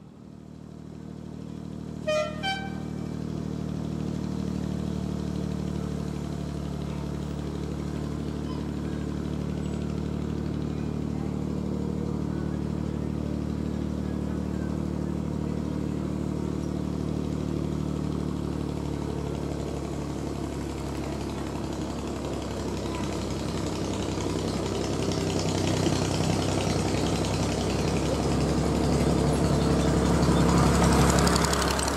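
Miniature diesel-hydraulic Bo-Bo locomotive D1994 "Eastleigh" running as it approaches, its engine getting louder near the end. It sounds two short horn blasts about two seconds in.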